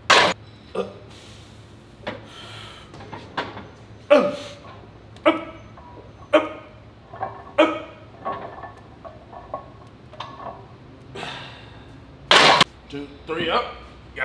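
Men's short vocal bursts, grunts and shouts, about one a second, during heavy incline barbell bench pressing, with a louder sharp burst at the very start and another about twelve seconds in.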